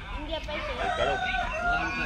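A rooster crowing: one long drawn-out call that starts about a second in and sinks slightly in pitch as it is held.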